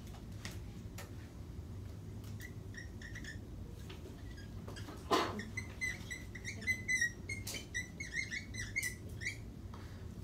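Dry-erase marker squeaking on a whiteboard as it is drawn in many short strokes, with a sharp knock about halfway through. A steady low hum runs underneath.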